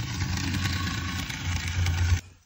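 Bachmann N scale Brill trolley running around the track, its small electric motor and worm gear giving a steady whirr over a low hum.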